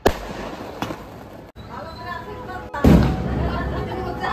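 Firecrackers going off: a sharp bang at the start and a louder one about three seconds in, with voices between them.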